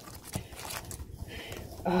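Faint handling noise as small plastic cases and packets are pushed back into a cardboard box: a few light knocks and a soft scuff, with a short 'uh' at the end.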